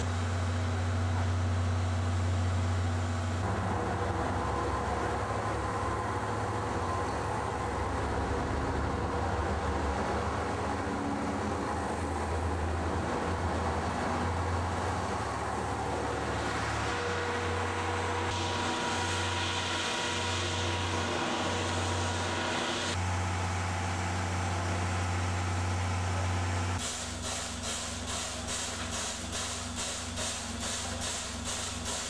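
Railway sounds: a steady low drone from trains at a station, with a diesel railcar going by close. Near the end, a steam locomotive's exhaust chuffs in even beats, about two or three a second, as it pulls away.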